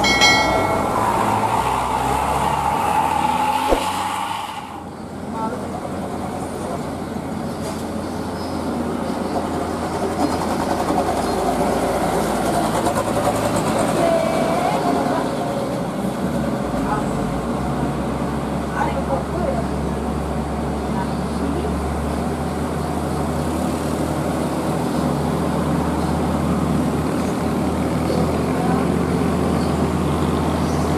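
Heavy diesel trucks climbing a steep hairpin bend, their engines labouring under load in a steady low drone, with a green Hino box truck's engine most prominent in the second half. A brief high tone sounds right at the start.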